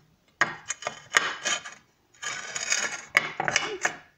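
Glazed ceramic pot and tray clinking and scraping against each other as a small square potted succulent is set down into a handmade glazed ceramic tray: sharp clinks with two stretches of grating scrapes.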